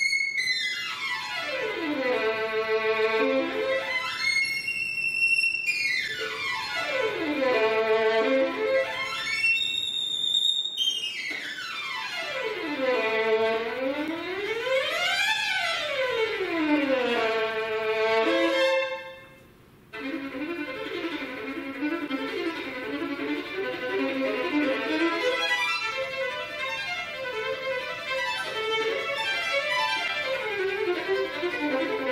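Solo unaccompanied violin playing rapid scale runs that sweep down to the bottom of its range and back up several times. A brief pause comes about two-thirds of the way through, followed by fast, busy passagework.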